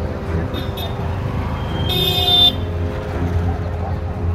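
A steady low rumble, with one short, high-pitched toot about halfway through.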